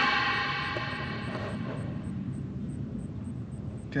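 Necrophonic ghost-box app playing through a small speaker: a sudden burst of echoing, ringing tones that fades away over about two seconds. Under it a low steady rumble of an approaching car.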